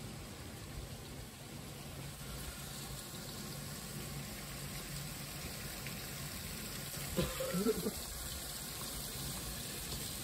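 Steady running-water noise with a faint low hum underneath, and a person's voice heard briefly about seven seconds in.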